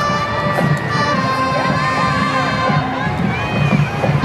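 A group of young people cheering, shouting and whooping, with music playing underneath. The whoops come mostly in the second half.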